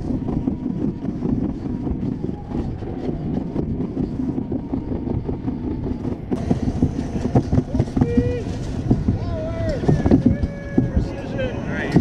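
Alpine slide sled running down its trough, a steady low rumble with small knocks from the ride. From about eight seconds in, high-pitched voice-like calls sound over it.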